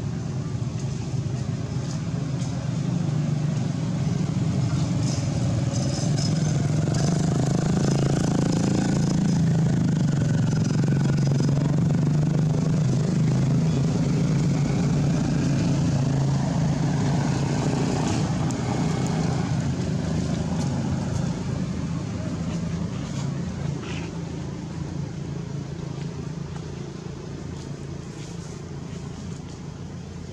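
A motor engine running with a steady low hum, growing louder over the first few seconds and fading gradually toward the end.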